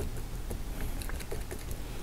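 Paintbrush dabbing on canvas: faint, irregular light taps of the bristles stippling in tree foliage, over a low steady hum.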